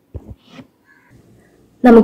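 A pause in a woman's lecture narration: two brief low sounds about a quarter second in, then quiet until her speech resumes near the end.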